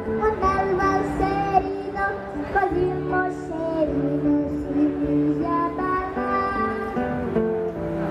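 Two children singing an Italian children's song into headset microphones, accompanied by acoustic guitar and amplified through a stage PA, with held, sustained notes.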